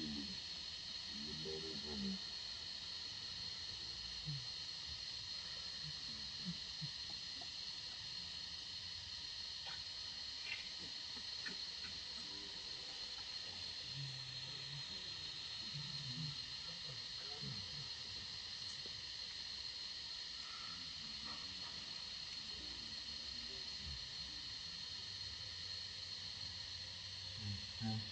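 Steady high hiss of outdoor background noise, with faint low murmurs of distant voices now and then.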